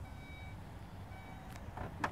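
2017 Audi Q7 power tailgate closing by itself: two short warning beeps about a second apart over a low motor hum, then clicks near the end as it comes down and shuts.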